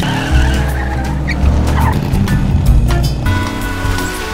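An open sports car's engine revving hard as the car pulls away and accelerates.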